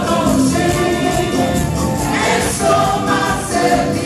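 Live gospel praise music: many voices singing together over instruments with a steady beat.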